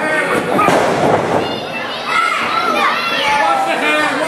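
Wrestling crowd shouting and calling out in a large hall. About half a second in comes a short burst of noise, a thud and shout, as the wrestlers hit the ring mat.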